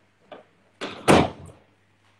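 A loud thump a little past a second in, with a few fainter knocks before it, heard through a phone's microphone while the phone is being moved about.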